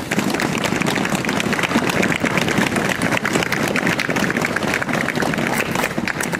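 Crowd applauding at the end of a song: many hands clapping, starting abruptly and dying down near the end.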